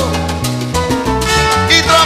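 Salsa band playing an instrumental passage between sung verses: a steady bass line, Latin percussion and several held notes.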